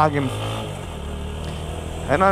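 Motorcycle engine running steadily under way at low road speed, a low even drone. A voice trails off in the first moment.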